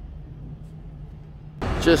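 A low, steady hum and rumble of room tone, then a man's voice starts near the end.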